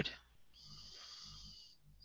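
A faint breathy voice sound, about a second long, with a soft pulsing in it.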